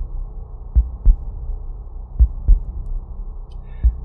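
A deep heartbeat-like thudding, two beats at a time about every one and a half seconds, over a steady low hum.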